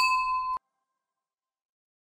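A single bright bell ding, ringing with several clear tones, marks the end of the workout. It is cut off abruptly after about half a second, and dead silence follows.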